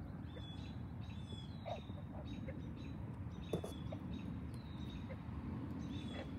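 Dusk lakeside ambience: short, thin, high-pitched animal calls repeat about once a second over a steady low rumble, with a couple of faint clicks.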